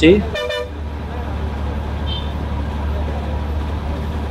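Bus engine droning steadily in the cabin on a climb up a hairpin mountain road, with one short horn toot about half a second in.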